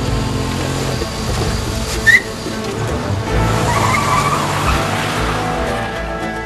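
A car pulling away hard: the engine runs low throughout and the tyres squeal, with a sharp short chirp about two seconds in and a longer rougher squeal a little later. Music plays faintly underneath.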